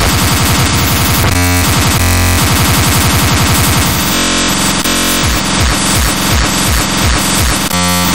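Loud, heavily distorted speedcore track. Extremely fast kick drums run almost together into a noisy roar and break off briefly a couple of times. In the second half the kicks slow to about three a second, each dropping in pitch.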